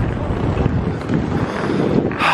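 Wind buffeting the handheld camera's microphone, a loud uneven rumble, over the noise of city street traffic.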